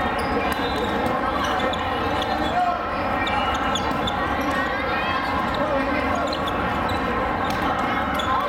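Volleyball rally in a big echoing hall: the ball is struck and bounces off hands and floor amid the steady din of other games and crowd chatter.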